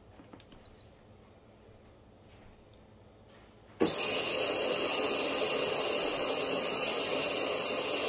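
Instant Pot Duo Crisp pressure cooker releasing steam: a short beep about a second in, then a sudden, steady hiss of steam venting from the release valve starting just before four seconds in. It is letting off the remaining pressure so the lid can be opened.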